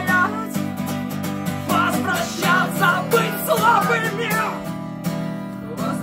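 Acoustic guitar strummed steadily with a voice singing over it. The singing fades out about four and a half seconds in, leaving the guitar.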